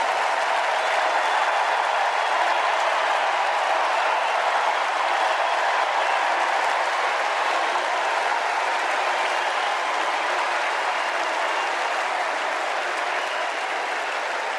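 Large convention crowd applauding steadily at the end of a speech, easing off slightly toward the end.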